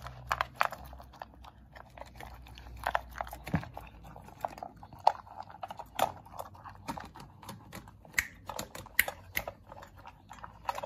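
A puppy eating from a stainless steel bowl, chewing and crunching dry kibble: irregular sharp clicks and crunches, several a second.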